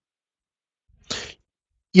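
Silence, then about a second in a single short breath noise close to the microphone, just before speech begins at the very end.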